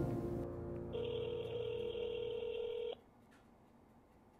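Telephone ringback tone through a smartphone's speakerphone: one steady ring of about two seconds starting about a second in, then cutting off, the call ringing at the other end before it is answered.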